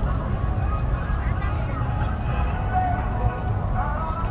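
Crowd of spectators talking, many overlapping indistinct voices, over a steady low rumble.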